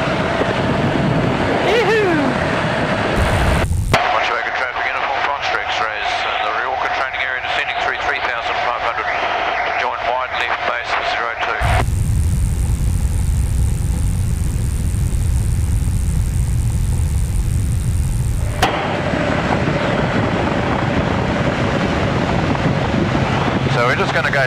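Aerobatic biplane's engine and propeller running steadily, with rushing air, heard from the cockpit. The sound changes abruptly about 4, 12 and 19 seconds in, the stretch between 12 and 19 seconds heavier and deeper.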